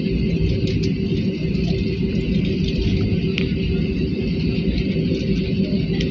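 Steady cabin noise of an Airbus A320-family airliner taxiing: an even low rumble of the engines and air conditioning, with one constant humming tone running through it.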